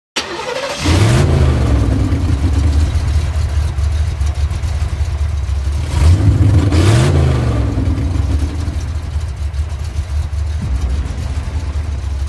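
An engine revving up twice over a steady low rumble, once about a second in and again about six seconds in.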